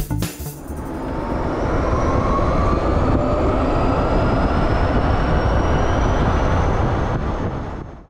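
Arcimoto FUV three-wheeled electric vehicle on the move, its electric motor whine slowly rising in pitch as it accelerates over heavy wind and road rush. The sound fades out at the end.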